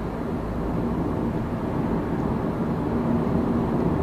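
Steady road and engine noise inside a moving car's cabin: an even rumble with a faint steady hum.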